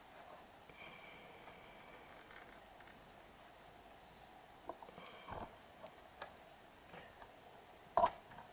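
A plastic hard-drive caddy being slid out of a Dell OptiPlex 780's metal drive bay: faint scraping, then a few small clicks and knocks in the second half, and a sharper click at the very end.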